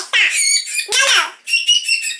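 French bulldog puppy whining and crying, a hungry puppy begging for its food. There are three high-pitched cries: the first two fall in pitch, and the last is a thin, steady whine near the end.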